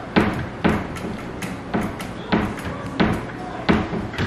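White baby gate knocking and rattling in a rough rhythm, about two knocks a second, as a toddler holding its bars bounces against it.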